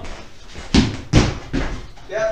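Two sharp thumps about half a second apart, then a lighter knock, as a person jumps up from a chair and rushes off in a fright.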